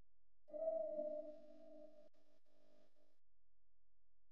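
A single soft ringing musical tone, chime-like, that sounds about half a second in and fades away within about three seconds.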